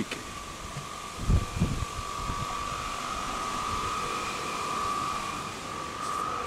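A steady mechanical whine holding one pitch over a light hiss, with a few low bumps about a second and a half in.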